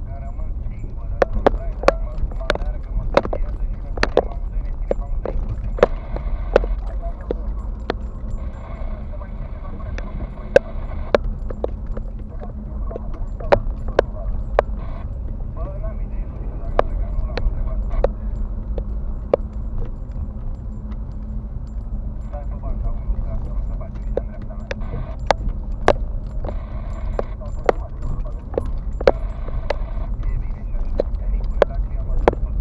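Inside a car driving slowly over a rough dirt road: a steady low rumble of engine and road, with irregular sharp clicks and knocks, about one or two a second, as the car and its fittings rattle over the ruts.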